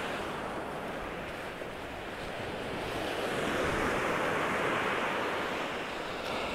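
Surf breaking on a sandy shore: a steady wash of small waves that swells louder about three seconds in and then eases.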